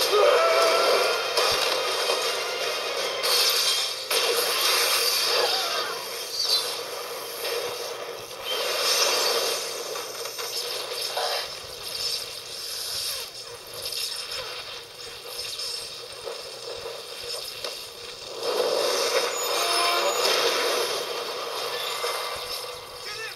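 Action movie clip's soundtrack played through a TV speaker: music and sound effects with some dialogue, thin and boxy with no bass, swelling and dropping in loudness.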